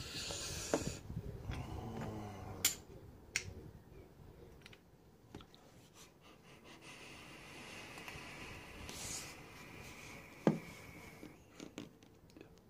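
A long draw on a dripping atomizer fitted to a metal tube mod: handling noise and two sharp clicks, then a steady hiss of air and vapour being pulled through for about four seconds. There is a single thump near the end.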